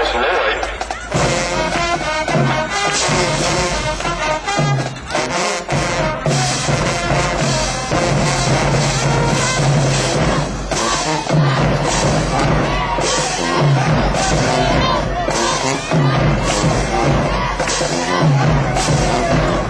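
High school marching band playing loudly in the stands: sousaphones and other brass over a drumline of snare and bass drums, with a low bass figure repeating about once a second under the drum hits.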